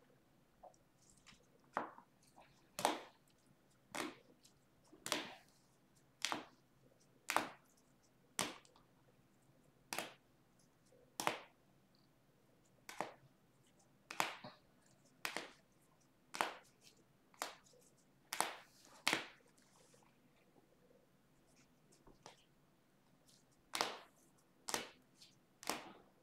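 Plastic-sleeved trading cards being flipped one at a time from the front of a stack to the back by hand, a short soft slap or swish about once a second.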